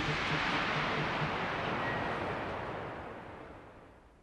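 Large concert crowd cheering and screaming after the song's final hit, an even roar that fades steadily away to almost nothing.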